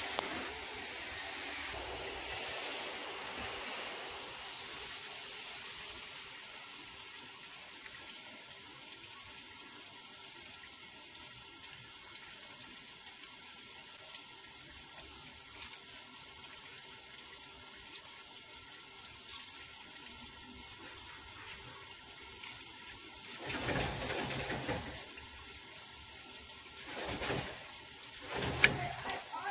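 Steady background hiss with a faint high whine and a low hum, with two brief rustling, scraping handling sounds near the end as a green template piece is worked off a stainless steel plate held in a lathe chuck.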